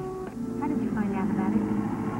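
Steady hum of a passing motor vehicle's engine in the background. It swells about a third of a second in, with faint voices over it.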